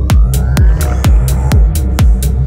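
Progressive psytrance: a steady four-on-the-floor kick, a bit more than two beats a second, with a rolling bassline filling the gaps between kicks and crisp hi-hats. A synth sweep rises in pitch through the first second.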